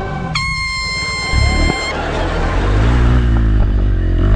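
A loud, high, held horn note cuts in about half a second in and stops abruptly about a second and a half later, over the music track. A low, wavering rumble then swells underneath it.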